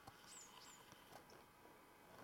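Near silence with two faint, short, high chirps falling in pitch, about a third of a second apart in the first second: a small bird calling.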